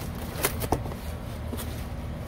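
Packaging being handled as a heavy black stone tea tray is worked out of its styrofoam box and plastic wrap: a faint rustle with two sharp clicks close together near the middle.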